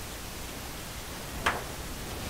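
A steady faint hiss of room tone, with one light tap about one and a half seconds in as a stretched painted canvas is handled on the table.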